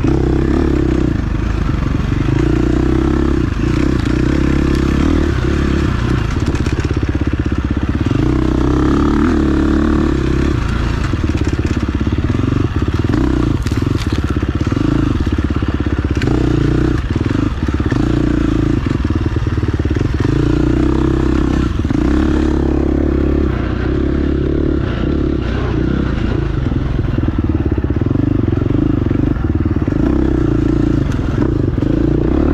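Off-road dirt bike engine running hard under a rider, the throttle opening and closing every second or two over rough trail, with clatter and scrapes from the bike as it rides over rough ground.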